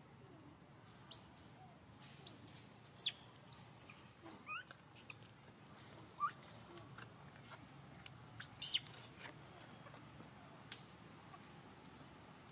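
Birds chirping: scattered short, high chirps that fall quickly in pitch, busiest in the middle stretch and thinning out near the end.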